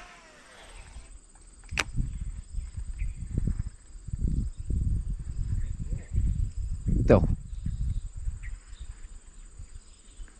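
A baitcasting reel during a cast: the spool whirs with a falling pitch in the first second, then there is a click about two seconds in. After that come several seconds of low rumbling handling noise, with another sharp click about seven seconds in.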